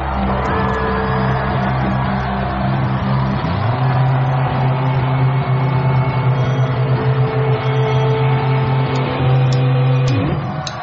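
Rock band music: sustained electric guitar chords over held low notes, the chord changing about three and a half seconds in.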